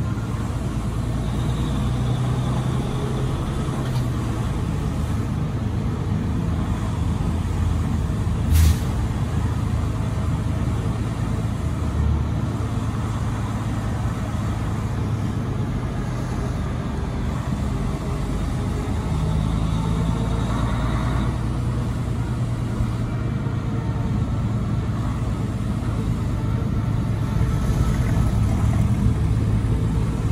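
Freightliner Cascadia semi-truck's diesel engine running steadily with road noise, heard from inside the cab while driving. A single sharp click comes about a third of the way in.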